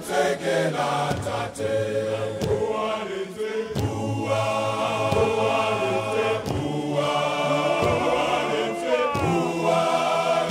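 Large male choir singing in harmony, several voice parts held together, with sharp hand claps at intervals.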